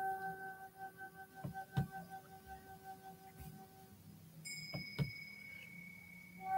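Two faint ringing chime tones. A lower, steady tone holds and stops about four seconds in; a higher tone sounds about half a second later and keeps ringing. A few soft clicks fall in between.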